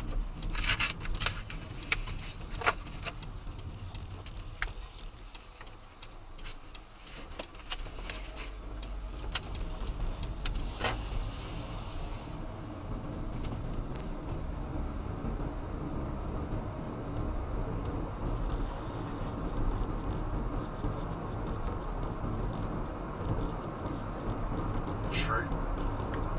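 Inside a car: quiet cabin with a few scattered clicks while the car sits slowed or stopped, then steady engine and tyre road noise that builds from about eight seconds in as the car pulls away and picks up speed.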